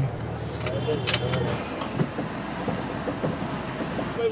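An old, worn-out minibus driving along, heard from inside the cabin: a steady engine hum under road noise.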